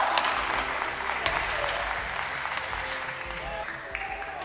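Badminton play: several sharp racket hits on a shuttlecock, over a steady hiss of applause that slowly fades.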